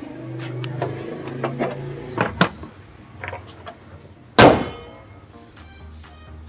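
A car bonnet slammed shut: one loud bang with a brief ringing tail about four and a half seconds in, after a few lighter clicks as it is lowered.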